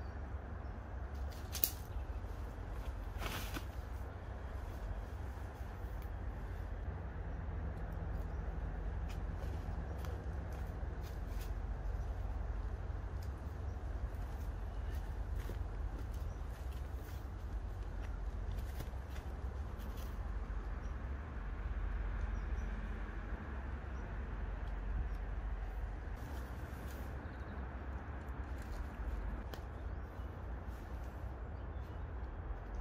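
Tent poles and tent fabric being handled, with a few sharp clicks as shock-corded pole sections snap together, over a steady low rumble.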